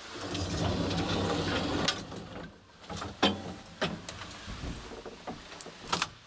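Old ASEA traction elevator running with a low hum for about the first two seconds, then a series of sharp clicks and knocks as the car's wooden door is unlatched and pushed open.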